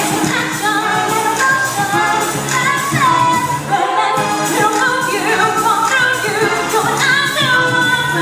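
Live music with women singing a melody into microphones over a continuous amplified accompaniment.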